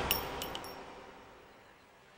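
The dying tail of a loud crash, with three or four faint, high-pitched clinks in the first half second or so, fading to a low hiss.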